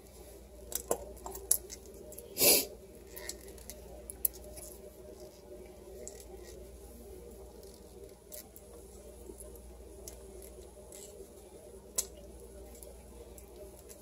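A metal tube of tomato paste being squeezed and folded down by hand over a pot: scattered soft clicks and crinkles, with one louder short noise about two and a half seconds in, over a steady low hum.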